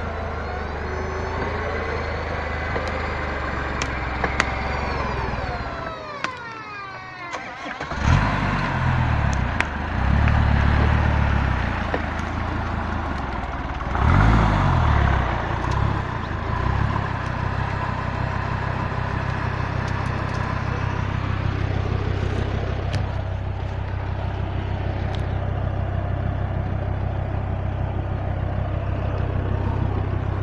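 Off-road 4x4's engine running as it tries to drive out of a mud bog, its front tyres spinning in the mud. The engine drops away briefly about six seconds in, then is revved hard twice, rising and falling, before settling back to a steady run.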